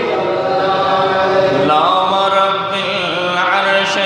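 A man's voice chanting a melodic religious recitation: long held notes that slide from one pitch to the next.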